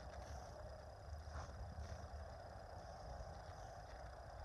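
Faint outdoor background noise with a steady low rumble and a few faint ticks.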